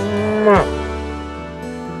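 A single moo from a cow, rising in pitch and breaking off about half a second in, then background music with sustained chords.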